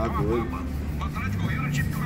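Men talking in the background over a steady low hum.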